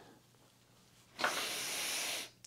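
A man's deep breath in: a steady hiss lasting about a second, starting a little past a second in, the breath he takes before lowering into a split squat.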